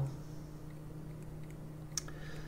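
A steady low hum of background room tone, with one short sharp click near the end.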